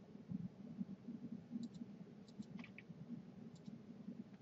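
Faint computer mouse clicks: several short clicks, some in quick pairs, over a low steady hum.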